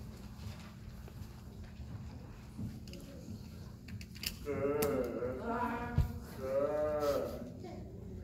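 Actors' voices making two drawn-out, wavering animal-like calls about halfway through, with a single thump between them, over a steady low room hum.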